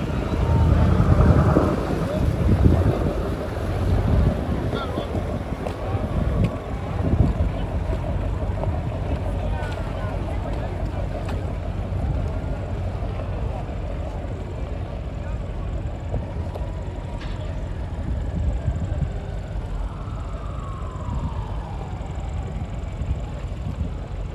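Wind buffeting the microphone in heavy gusts through the first several seconds, over the steady low running of a boat's engine.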